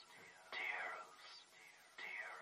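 Faint whispered voice, processed with a repeating echo: the same falling sound recurs about every three-quarters of a second, growing fainter.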